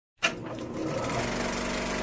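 Film projector sound effect: it starts abruptly with a click, then runs with a steady, fast clatter.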